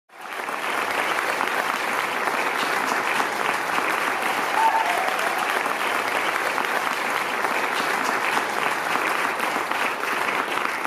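An audience applauding steadily: dense, even clapping from a large crowd.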